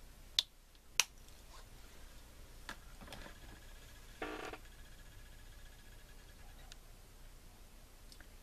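Quiet handling sounds of painting with a small brush: two sharp clicks about half a second apart in the first second, a few fainter ticks, and a short pitched squeak a little past the middle.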